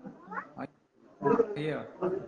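A person's voice over a video-call connection: a short rising 'ah' early on, then more drawn-out vocal sound near the end.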